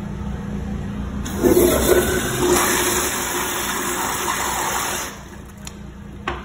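Commercial flush-valve toilet flushing: a loud rush of water starts about a second in, strongest at first, and cuts off shortly before the end.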